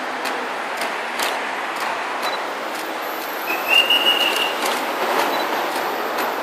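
Busy city road traffic: buses and cars passing in a steady rush of engine and tyre noise. A short high-pitched squeal sounds for about a second midway through.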